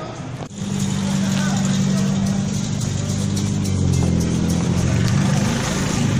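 A motor vehicle's engine running close by, a steady low hum that comes in about half a second in and holds, in street traffic.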